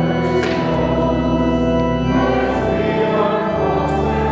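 A hymn sung to church organ accompaniment, the organ holding sustained chords that change every second or so.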